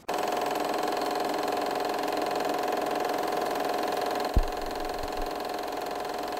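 Film projector running: a steady mechanical whir that starts abruptly, with a single low thump about four seconds in.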